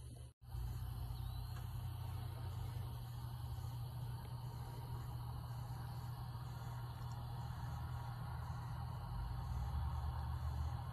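Evening outdoor ambience: a steady low rumble like distant road traffic, with faint insects chirping high and evenly about every half second. It starts after a brief dropout in the sound.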